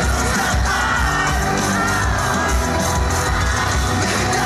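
Live rock band playing loud through a concert PA, heard from the audience on a phone recording, with a dense, unbroken mix of drums, bass and guitars.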